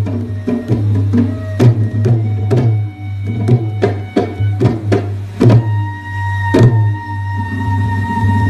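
Manipuri traditional music led by pung (Manipuri barrel drum) strokes in an uneven rhythm over a steady low hum, with two heavier ringing strikes late on. About seven seconds in, a single held high note begins.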